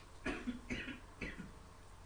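A person coughing three times in quick succession, a little way off.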